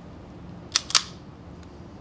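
Two sharp metallic clacks about a fifth of a second apart, from the slide of an Archon Type B polymer pistol being worked by hand.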